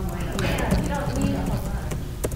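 Indistinct talking among people in a room, with scattered light clicks and knocks through it.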